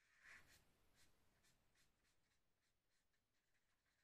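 Very faint scratching of a felt-tip marker colouring on paper, in short repeated strokes, the loudest about a third of a second in.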